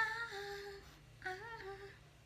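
A woman's voice singing two short wordless phrases, each a held high note that drops in pitch at the end.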